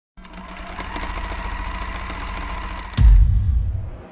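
A steady, rapid mechanical clatter with a thin whining tone, then a sudden deep boom about three seconds in that fades away.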